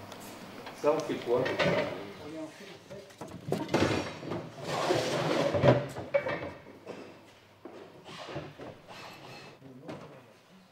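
Workshop handling sounds: a hub-motor wheel being set into a plastic crate, with scraping and clattering about four to six seconds in, and a voice talking briefly near the start.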